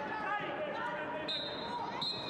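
Live sound of a football match on an artificial pitch: the ball thudding as it is kicked, with players and spectators shouting. A high steady tone comes in about a second and a half in.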